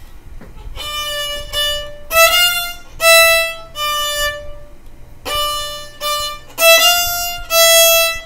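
Solo violin, bowed note by note without a slur: a short phrase of about five notes, a brief pause, then the phrase played again.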